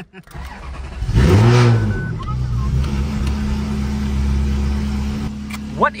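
Ferrari 360 Modena's V8 engine starting: a short build-up, a quick flare of revs up and back down, then a steady idle.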